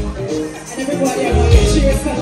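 A live soca band playing loudly through a large outdoor PA, with a heavy bass beat.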